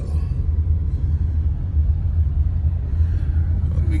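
Steady low rumble inside a moving car's cabin: engine and road noise while driving slowly.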